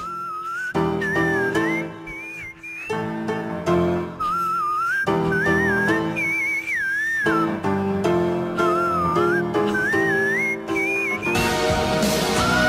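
A male singer singing very high, fast melismatic runs in whistle register, in short phrases, over piano chords.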